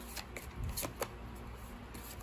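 Tarot cards being handled and one laid down on a soft cloth: a few light flicks and taps in the first second, then only faint handling.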